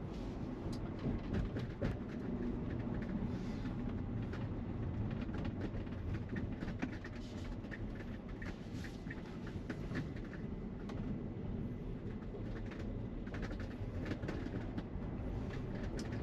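Steady tyre and road noise inside the cabin of a Tesla Model Y electric car on the move, with no engine sound, and scattered faint clicks and ticks over it.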